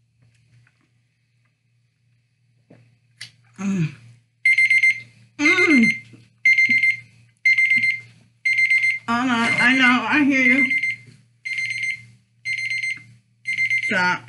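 An electronic alarm beeping: a high, steady-pitched beep about once a second, starting about four and a half seconds in. It is the loudest sound, with a woman's voice making a few short sounds over it.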